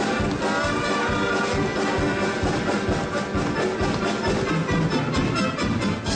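Wind band playing, with trumpets, trombones and saxophones over a steady drum beat.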